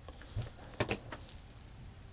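A tarot card being laid down on a spread of cards: a few faint, light clicks and taps, with the light jingle of rings and bangles on the hand.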